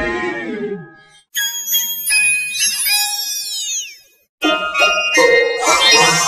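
Children's-show music run through pitch-shifting video-editor effects: bright, tinkling chime-like tones in three bursts with short breaks between, their pitch sweeping downward.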